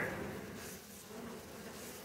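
Faint, steady hum of a mass of honey bees crowding a frame lifted from a nuc hive.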